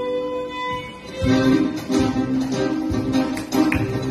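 Live acoustic band of guitar, accordion and violin: a held note fades out about a second in, then strummed acoustic guitar and accordion chords come in with a steady accented rhythm.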